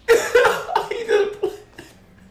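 A man's explosive, cough-like bursts of laughter, about six in quick succession that start suddenly and die away within two seconds.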